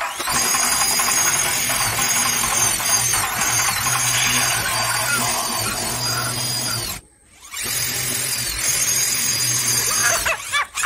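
Handheld corded electric drill running against a wood-finish false-ceiling panel overhead, a steady whine that cuts out for about half a second near the seven-second mark and then starts again.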